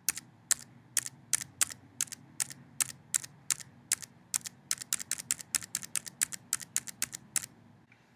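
Tab key on a computer keyboard pressed over and over, single sharp keystrokes about three to four a second, quickening a little in the second half and stopping shortly before the end, as keyboard focus steps link by link through a website's navigation menu.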